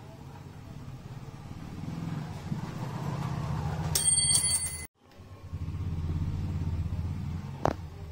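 A motor vehicle engine rumbling, swelling and fading twice, with a brief metallic ring about four seconds in, a sudden cutout just before the halfway point and a single sharp click near the end.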